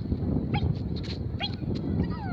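Doberman puppy whining: two short rising cries about a second apart while it holds a sit-stay, over a steady low rumble.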